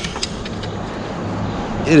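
Road traffic passing over a highway bridge overhead, heard from beneath it: a steady rush of tyre noise over a low hum, growing slightly louder.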